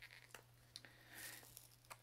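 Faint papery rustling and tearing as a paper band is peeled off a ball of yarn, loudest about a second in, with a few soft clicks.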